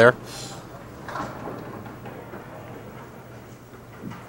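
Faint bowling-alley room noise, a low even murmur, with one brief soft sound about a second in.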